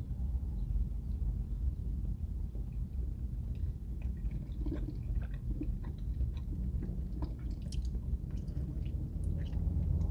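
A man chewing a mouthful of food with faint, wet mouth clicks, over a steady low rumble in a closed car cabin.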